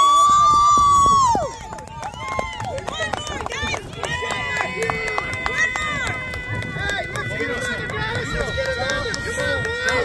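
Spectators cheering a goal at a youth soccer game. A close voice screams loudly for about a second and a half, then many voices shout and cheer together.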